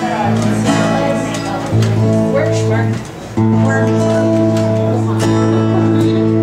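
Acoustic guitars strumming chords over a bass guitar, a small acoustic band playing an instrumental opening, with a short break about three seconds in before the band comes back in.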